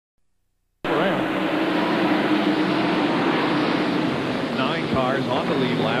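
A pack of NASCAR stock cars' V8 engines running at racing speed around the track, a dense steady drone that cuts in suddenly about a second in after silence.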